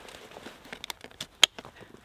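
Backpack hip-belt buckle being fastened, with rustling of the pack's straps and a few sharp clicks, the loudest about a second and a half in.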